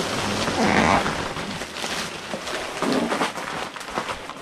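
Plastic packing rustling and crinkling as inflated air pillows and bubble wrap are handled and pulled out of a cardboard shipping box, loudest about a second in.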